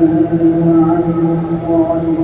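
A man's voice reciting the Quran in a drawn-out melodic chant, holding one long note with slight wavers in pitch.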